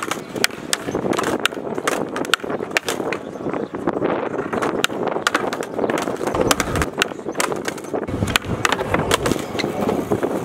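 Skateboard wheels rolling on concrete, with frequent sharp clacks and knocks of the board, as a skater tries backside tailslides on a skate-park box.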